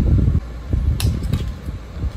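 Low rumbling handling noise from craft work at a table, with irregular soft knocks and one sharp click about a second in.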